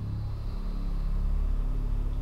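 A steady low rumble that holds one deep, even pitch throughout.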